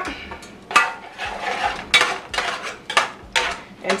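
A utensil stirring shrimp and pasta water in a frying pan, scraping and clacking against the pan in a string of irregular strokes, roughly two a second.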